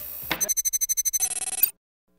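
Electronic transition sound effect: a short burst of hiss, then a fast run of high digital beeps, ending in a brief buzzy tone that cuts off suddenly.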